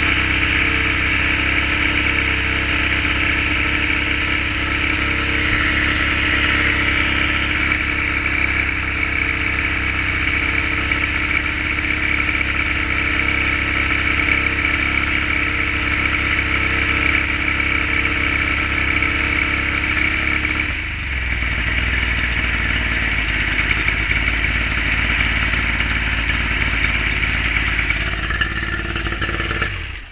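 Yamaha two-stroke outboard motor idling steadily on flushing water, held at a fast idle by its hot-start system, which advances the timing while the engine warms. About two-thirds of the way through, the engine note changes abruptly as the engine settles toward its normal idle. The sound falls away near the end.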